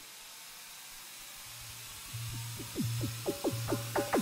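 Electronic club music in a DJ mix drops out suddenly, leaving only a hissing noise for about a second and a half. A low bass note then comes in, and drum hits and short pitched stabs return, building the track back up toward the end.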